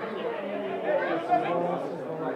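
Indistinct chatter of several voices talking over one another, with no single clear speaker.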